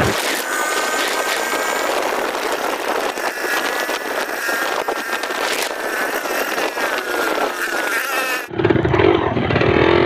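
A motor vehicle riding along a paved road: steady engine and road noise with a faint whine that wavers slightly in pitch. About eight and a half seconds in, an abrupt cut brings in a different, lower sound.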